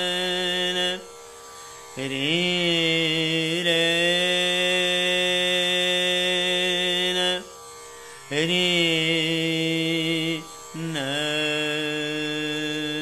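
Male dhrupad voice singing the unmetred alap of raga Bageshri: long held notes, each phrase sliding up into its note, broken by three short pauses. A faint tanpura drone carries on through the pauses.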